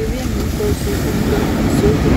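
Surf breaking on a sandy beach under a loud, steady rumble of wind on the microphone, with a faint voice behind it.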